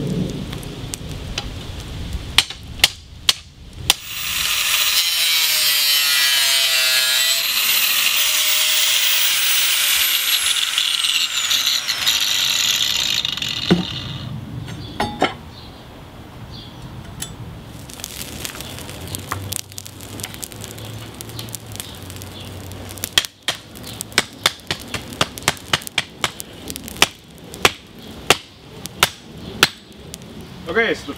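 Hammer blows on hot leaf-spring steel on the anvil, then a corded angle grinder cutting through the spring steel for about nine seconds, its whine falling away as it spins down. Near the end comes a quick run of hammer strikes on the red-hot steel on the anvil.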